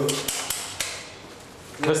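Four sharp clicks or knocks in quick succession in the first second, in a hard-walled hallway, then a quieter stretch before a man starts speaking near the end.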